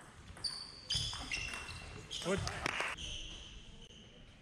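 Table tennis hall sounds: a few sharp ball clicks and short high-pitched squeaks of shoes on the sports-hall floor, with a voice saying 'Gut' about two seconds in.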